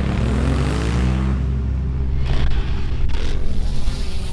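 Honda Africa Twin's parallel-twin engine revving as the bike accelerates on dirt. Its pitch climbs over the first second or so and then holds steady. Two short bursts of noise come later.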